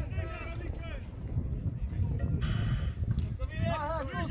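Spectators' voices at a football match, talking and calling out briefly near the start and end, over a steady rumble of wind on the microphone, with a short hissy burst about two and a half seconds in.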